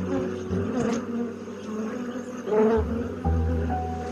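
Honey bees buzzing in numbers around their hives, under background music whose low notes change about three seconds in.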